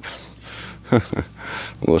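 A man's short voice sound, falling in pitch, about halfway through, then he laughs near the end.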